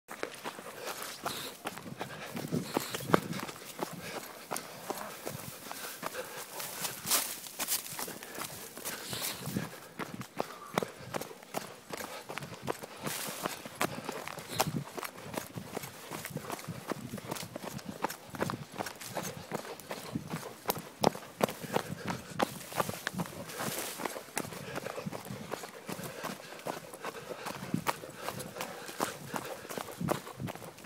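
Footfalls of people running on a trail: a continuous run of quick, irregular strides with scuffing, and the odd louder strike.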